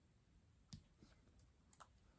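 Near silence with a few faint clicks and taps: a clear acrylic stamp block pressed down onto a paper circle and lifted off. The clearest click comes about three-quarters of a second in, and two close together come near the end.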